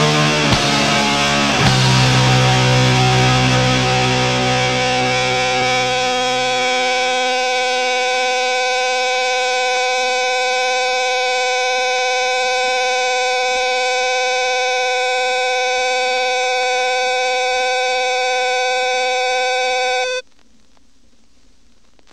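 The end of a hardcore punk track: the full band hits a final chord about a second and a half in, the drums and bass die away, and a steady distorted electric guitar tone rings on as feedback for about fourteen seconds. It cuts off suddenly near the end, leaving faint record hiss.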